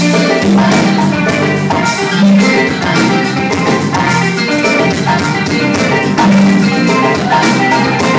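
Live Wassoulou band playing with a steady beat: electric guitars, bass and drum kit with percussion, heard from the audience.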